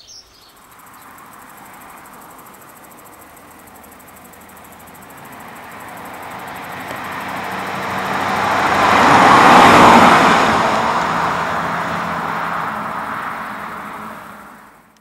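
A Hyundai i20 Coupé with a 1.0 T-GDI turbo petrol engine driving past on an open road: its engine and tyre noise grows as it approaches, is loudest about ten seconds in, then fades as it moves away.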